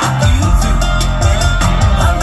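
A live band playing loud through the stage PA, heard from the crowd: a drum kit keeps a steady beat over bass and guitar.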